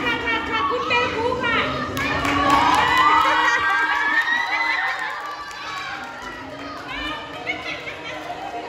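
A group of children shouting and cheering excitedly, with many high voices overlapping. It is loudest a few seconds in and dies down in the second half.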